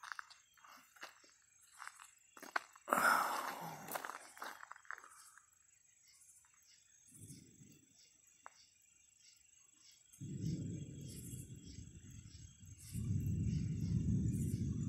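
Night insects chirping steadily, with pulses about twice a second, while a phone is handled with clicks and a burst of rustling about three seconds in. A low rumble sets in over the last few seconds.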